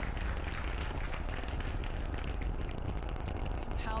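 Falcon Heavy's rocket engines in ascent: a steady, deep rumble with a crackling edge.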